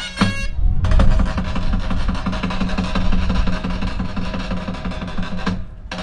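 Bulgarian folk music: gaida bagpipes playing for a moment. About a second in, it changes to a denser, noisier stretch of music with a steady drone and regular drumbeats, which fades briefly near the end.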